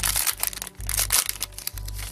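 Foil Pokémon booster pack wrapper crinkling and tearing as it is torn open by hand, a dense run of small crackles, over background music with a steady bass beat about once a second.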